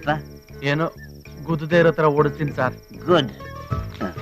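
Crickets chirping in a steady, continuous high trill behind men's voices speaking.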